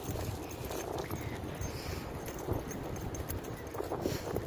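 Footsteps of a person walking on a snowy, slushy pavement, picked up with a steady low rumble of handling and wind noise on the handheld phone's microphone.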